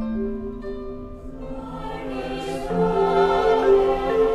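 Chamber choir singing a slow, sustained passage in several parts, the voices growing fuller and louder from about halfway through.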